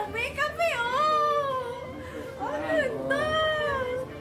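A high-pitched human voice making drawn-out sounds that glide up and down in pitch.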